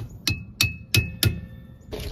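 Hammer tapping a metal tool at a trailer's brake hub: four sharp taps about a third of a second apart, each with a brief metallic ring.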